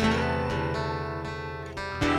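Instrumental passage of a song: a guitar chord strummed once and left ringing, fading away over a steady bass note, with a light new strum just before the end.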